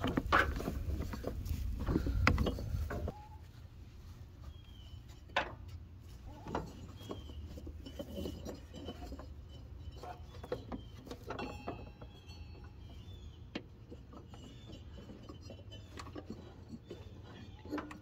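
Rubber deck belt being worked by hand around the metal pulleys and deck of a riding mower: scattered light knocks, clicks and rubbing. The handling is louder in the first three seconds, then quieter.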